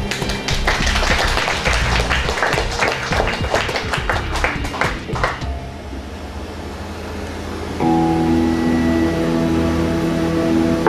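Audience clapping for about five seconds after the last song is announced, dying away over a low amplifier hum. About eight seconds in a sustained chord starts ringing through the band's amplifiers as the song begins.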